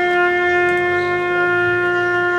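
A solo brass horn, trumpet or bugle type, plays one long, steady, held note of a slow ceremonial call.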